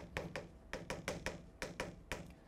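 Chalk writing on a chalkboard: a quick run of light taps and short strokes as characters are written.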